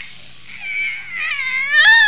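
A seven-month-old baby girl's high-pitched playful screaming. The squeal dips in pitch and then climbs sharply into its loudest part near the end.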